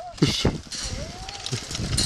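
Footsteps on a dirt track, with a few low thumps near the start and a faint distant voice about halfway through.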